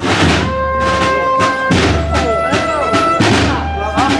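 Processional brass band music with drums. It breaks in suddenly with a drum strike, drum beats fall irregularly throughout, a held brass note sounds for about a second, and voices sound over the music in the second half.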